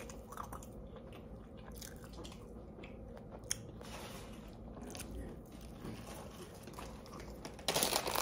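A person chewing a mouthful of Philly cheesesteak, faint wet chewing with small scattered clicks. Near the end a loud crinkling rustle starts.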